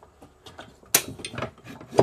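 A metal loft ladder being unhooked and taken down from its mounting: a sharp metal clack about halfway through, then a short scrape of the ladder rubbing against its fittings, and another clack at the end.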